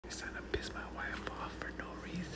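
A man whispering close to the microphone, with a brief click about half a second in.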